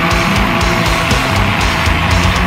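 Slamming beatdown / brutal death metal track playing loud, with heavily distorted guitars, bass and fast, dense drumming.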